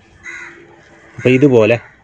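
A crow caws once, briefly, in the background. Then a man's voice speaks for about half a second.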